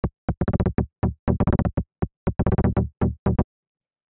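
A Serum software synth plays a saw-wave minor chord as short, low-pass-filtered plucks in a quick, uneven rhythm. The decay of the filter envelope is being turned up while it plays, and the pattern stops a little before the end.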